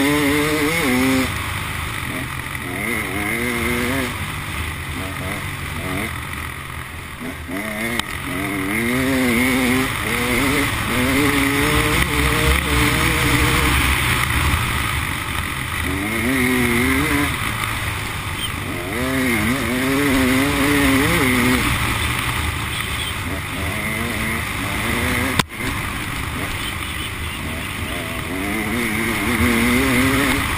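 Enduro dirt bike engine revving up and down as it is ridden along a sandy trail, its pitch rising and falling again and again with throttle and gear changes, over steady wind and riding noise on the microphone. One sharp knock near the end.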